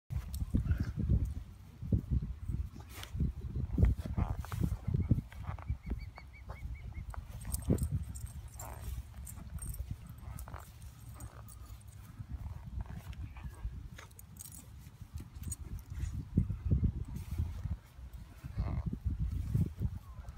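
Irregular, gusty low rumbling of wind buffeting the microphone.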